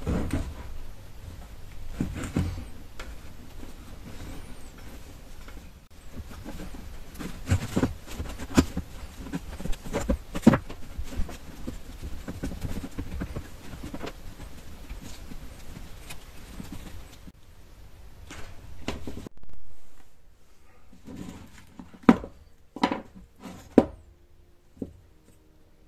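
Irregular knocks, taps and clicks of wooden mould parts being handled as a silicone mould is opened for demoulding, with one brief louder sound near the end.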